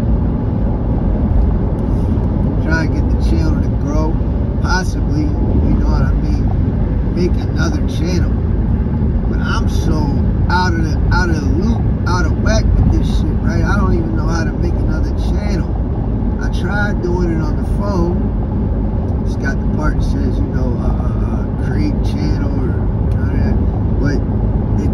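Steady road and engine noise inside a moving car's cabin at highway speed, with a person's voice heard over it.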